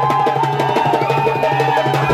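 A hand drum beaten in a fast, even rhythm, with a group of voices singing along.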